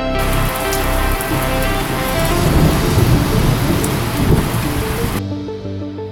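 A heavy rain-like hiss with a low thunder-like rumble, layered over electronic music. The rumble is strongest in the middle, and the noise cuts off abruptly about five seconds in, leaving the music alone.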